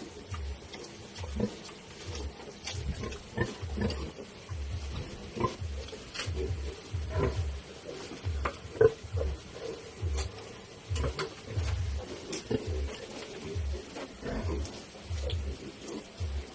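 Sow grunting low and evenly, about one and a half grunts a second, with a few brief higher sounds in between.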